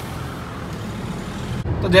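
Steady road and traffic noise from a moving car: an even hiss over a low rumble. A man starts speaking right at the end.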